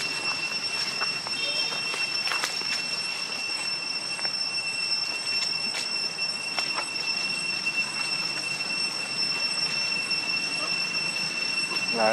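A steady high-pitched whine, one tone with a second an octave above it, unbroken over a background hiss, with a few light clicks scattered through.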